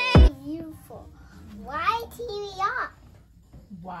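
A young child talking in a high voice, the words not clear, in short phrases with pauses. The end of a music track stops with a sharp beat just after the start.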